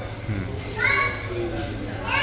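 A child's high-pitched voice calling out in the background, once about a second in and again at the very end, over the steady low hum of a restaurant dining room.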